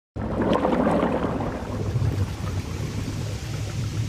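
Deep, steady underwater rumble, swelling louder in the first second.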